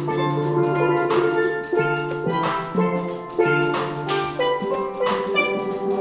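Steel pan ensemble playing a tune: lead and harmony pans ringing out the melody and chords over low bass-pan notes, to a steady beat.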